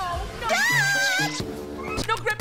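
Animated film soundtrack: music, with a high, wavering squeal from a cartoon character about half a second in that rises and then falls before steady held music tones take over.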